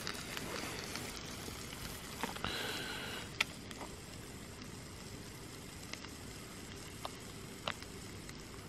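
Faint, steady hiss of camp cooking on a gas stove, with a few light clicks and crinkles from a plastic food pouch being handled.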